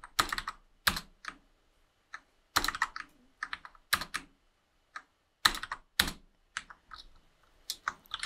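Computer keyboard typing in short, irregular bursts of keystrokes with brief pauses between them.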